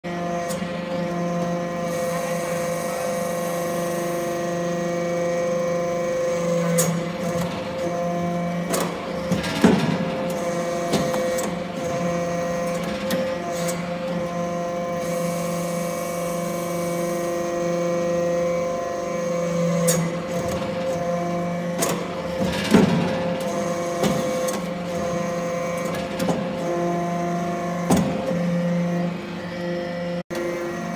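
Hydraulic metal-shaving briquetting press running: a steady hum from its hydraulic power unit, whose tone changes every several seconds as it works through its pressing cycle. A few sharp metallic clanks come as pressed metal briquettes are pushed out and drop onto the pile.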